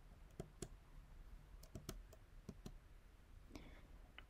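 Faint, scattered clicks of computer keyboard keys typing a word, in small groups of two or three strokes with pauses between.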